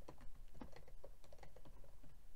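Computer keyboard being typed on: a quick, uneven run of light key clicks, several a second.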